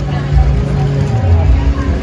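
Busy outdoor ambience: a steady low rumble with faint background music and voices.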